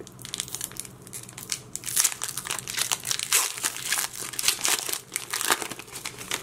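Foil wrapper of a Pokémon trading card booster pack crinkling and tearing as it is pulled open by hand, in irregular crackles that grow louder about two seconds in and again near the end.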